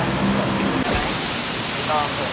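Voices talking over a steady, loud rushing noise, like outdoor street ambience or wind on the microphone. The noise changes tone abruptly a little under a second in, where the footage cuts.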